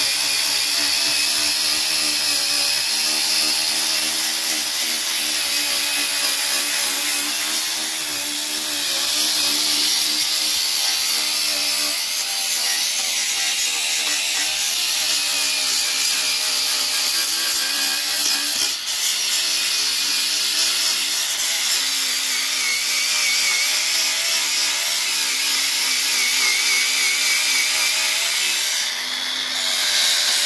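Small electric angle grinder with a sanding disc running under load, grinding paint and body filler back off a rusty steel sill. Its motor whine wavers steadily as the disc is pressed on, with brief dips about a quarter of the way in, about two thirds in and near the end.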